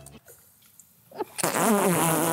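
After about a second of near silence, batter squelches out of a plastic batter dispenser and drops into hot oil, which starts sizzling loudly about 1.4 seconds in.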